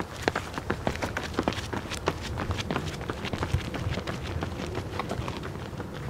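Two runners' shoes striking a concrete path in quick, light footfalls at a high cadence, several steps a second.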